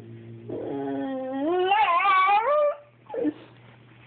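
Boxer dog whining to get a cat to play: one long whine, about two seconds, that rises and wavers in pitch, then a brief second whine about three seconds in.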